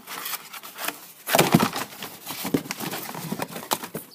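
Brown packing paper crinkling and rustling, with knocks against a cardboard shipping box, as a hand digs a candle jar out of the box. The loudest crunch comes about a second and a half in.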